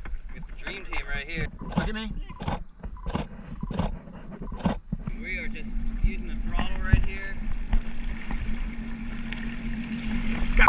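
Jet ski engine idling, a steady low hum from about halfway in, with water sloshing against the hull.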